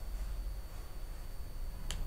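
Low steady hum and room noise from the recording microphone, with two quick clicks near the end: a computer key or button being pressed to step the debugger on one line.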